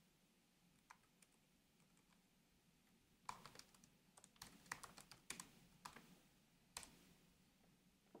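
Faint typing on a computer keyboard: two isolated clicks about a second in, then a few seconds of key clicks in quick irregular runs starting about three seconds in.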